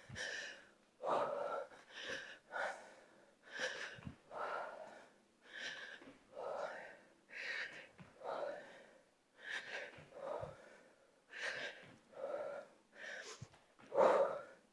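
A woman breathing hard into a headset microphone while doing lunge pulses, with a strong, audible breath about once a second.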